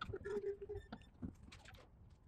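Hand-cranked etching press running its bed through the rollers: a brief squeak in the first second and several faint clicks and knocks from the mechanism.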